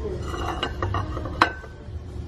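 A ceramic plate being handled on a wooden shelf: a few light clicks, then a sharper clink about one and a half seconds in that rings briefly.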